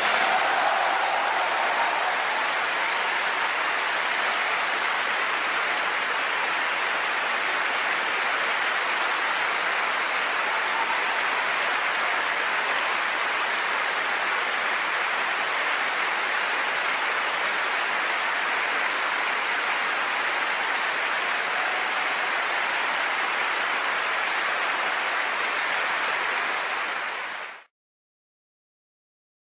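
Audience applauding at a steady level, cut off suddenly near the end.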